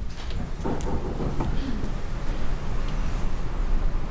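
Low, steady rumbling room noise picked up by the council chamber's open microphones while people stand, with a few faint clicks and a brief faint murmur about a second in.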